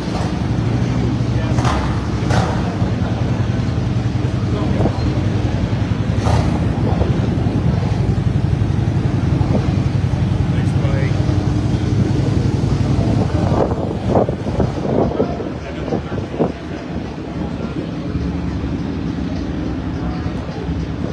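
An engine running at a steady, unchanging pitch, dying away about two-thirds of the way through, over crowd chatter and a few scattered knocks.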